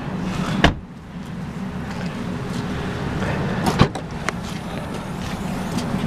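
Car doors on a Vauxhall Astra hatchback: a door shut with a thump about half a second in, then a second sharp knock about two thirds of the way through. A steady low rumble runs underneath.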